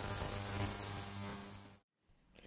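Ultrasonic cleaner running with a steady, a bit irritating buzzing hum and hiss as it washes brass cartridge cases in hot water and cleaning solution. The sound fades out near the end.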